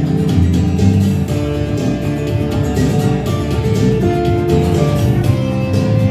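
Live band playing an instrumental passage on electric bass, electric guitar and acoustic guitar, over a steady strummed rhythm.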